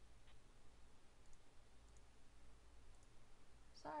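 A few faint computer mouse clicks, scattered and well apart, over near-silent room tone.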